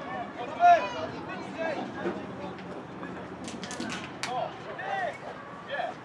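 Indistinct voices calling out in short phrases, with a few sharp clicks about three and a half to four seconds in.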